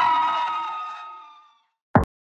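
A person's voice through a microphone holding a long shout, fading out over about a second and a half, then a short click near the end.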